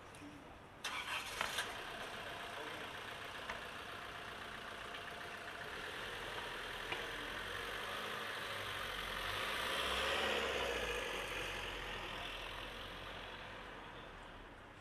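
A vehicle engine starting with a few sharp clicks about a second in, then running steadily. It grows louder to a peak about two-thirds of the way through and fades toward the end.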